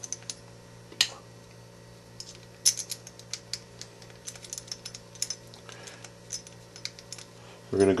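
Scattered light clicks and taps of small screws and kit parts being handled as screws are fitted by hand into a radio-control car's front brace, with a sharper click about a second in. A steady low hum runs underneath.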